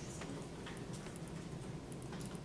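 Irregularly spaced light clicks and taps of laptop keys being typed, over a steady low room hum.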